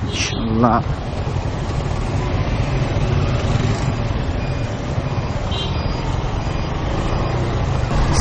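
Motorcycle engine running under wind and road noise as the bike rides through traffic and picks up speed.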